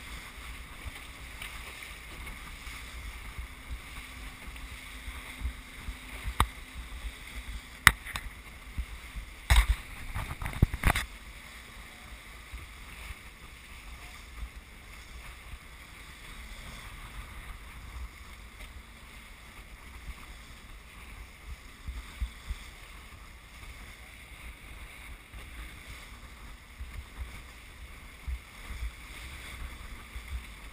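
Wind and water rushing past a small sailing trimaran under way, with a fluctuating low wind rumble on the microphone. A few sharp knocks come a fifth to a third of the way in.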